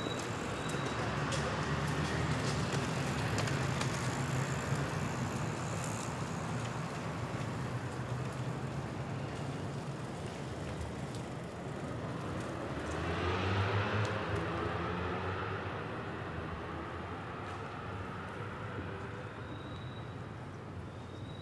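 City street traffic: cars passing, the nearest going by about thirteen seconds in with its engine note rising.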